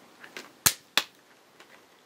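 Clear plastic clamshell pack of a RAM kit being pried open by hand: two sharp plastic snaps about a third of a second apart, after a couple of fainter clicks.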